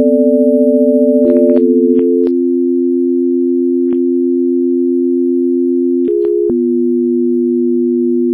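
Electronically generated pure sine tones, two or three sounding at once, each held steady and then jumping abruptly to a new pitch with a click, about half a dozen times. A slight wavering beat is heard in the first two seconds.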